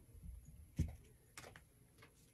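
Soft handling noises while crafting at a table: mostly quiet, with one small knock a little under a second in and a fainter tick about half a second later.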